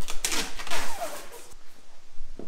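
A clear acrylic (plexiglass) sheet being slid and scraped across a plywood worktable. There is about a second of scratchy rubbing with a short falling squeak, then a light click.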